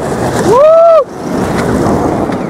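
A person's voice: one loud call, rising and then falling in pitch, about half a second in, cutting off sharply. Under it runs a steady rushing noise.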